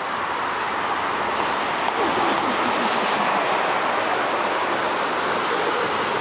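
Articulated city bus driving past close by: a steady, even rush of vehicle noise.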